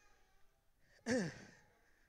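A man's audible sigh about a second in: a short breath with a voiced tone falling in pitch.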